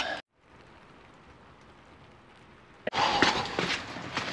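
Faint steady hiss, then about three seconds in, rain falling hard, loud and close to the microphone.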